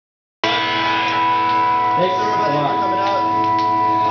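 A held electric guitar chord ringing steadily through the amplifiers, starting abruptly just under half a second in. A voice talks over it from about halfway through.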